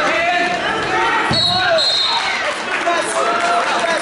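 A thud on the wrestling mat about a second in, followed at once by a short, steady, high referee's whistle that stops the action. Coaches and spectators shout throughout.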